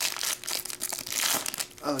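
Foil trading-card pack wrapper crinkling and crackling as it is torn open and pulled apart by hand.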